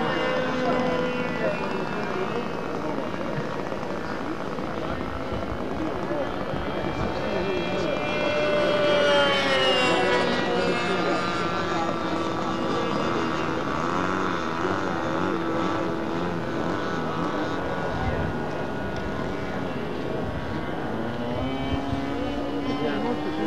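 Small engine of a radio-controlled powered-parachute model running in flight. Its pitch climbs and falls, loudest about nine to ten seconds in, then holds steadier.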